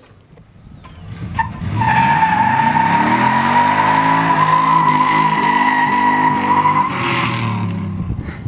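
A 2001 Chevy S-10 Xtreme with a swapped-in C5 Corvette LS1 5.7-litre V8 revs up hard as it launches. Its rear tires spin and squeal steadily for about five seconds, then the sound eases off as the truck pulls away.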